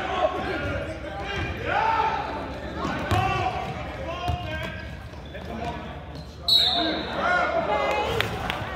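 A basketball bouncing on a gym floor, with a few sharp knocks, under players' and spectators' shouted voices ringing in a large hall. A short high squeal comes about two-thirds of the way through.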